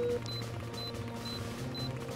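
Cartoon handheld scanner beeping while it scans: short high-pitched beeps about twice a second, over a low, steady background music bed.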